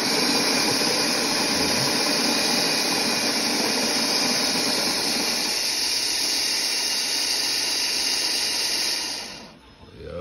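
OXO Brew conical burr coffee grinder running on its timer, its motor and burrs grinding coffee beans in one steady run that starts suddenly. About halfway through the sound loses some of its lower, fuller part, and it winds down and stops shortly before the end.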